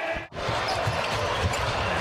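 Game broadcast audio of a basketball bouncing on the hardwood court over steady arena crowd noise. The sound drops out briefly about a quarter second in, at an edit cut in the highlights.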